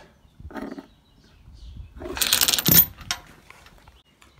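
Steel chain links rattling and clinking against a metal chain-holder plate and the body panel, one short burst about two seconds in lasting under a second.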